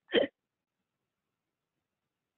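A woman's single short laugh at the very start, then dead silence.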